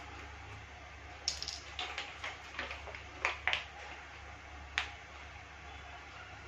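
A plastic food pouch crinkling and clicking as it is picked up and handled: a quick run of sharp crackles over about two seconds, then one more click, over a steady low hum.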